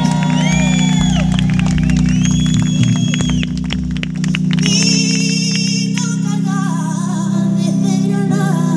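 Live concert music through a festival PA, heard from the crowd: a steady low bass drone under high gliding tones, then a stepped melody line with vibrato from about five seconds in.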